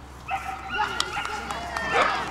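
Cardigan Welsh Corgi barking several times in excited yaps as it runs, with people's voices around it.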